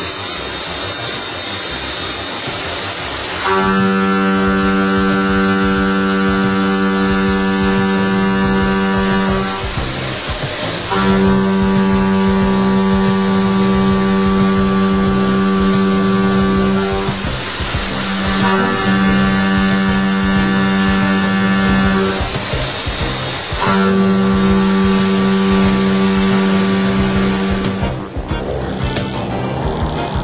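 Leadwell V-40 vertical machining centre face-milling a metal block: a steady pitched hum while the cutter is in the cut, in four passes of five or six seconds each with short breaks between. A constant high hiss runs underneath.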